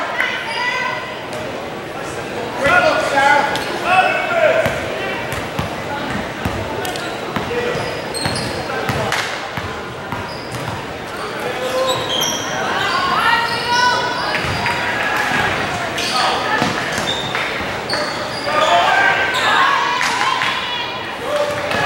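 Basketball bouncing on a hardwood gym floor, with unclear voices of players and spectators echoing through the hall.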